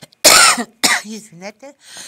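A woman coughing into her hand: a loud cough about a quarter second in, then a second, shorter cough a little over half a second later, followed by a few short throaty sounds and an intake of breath.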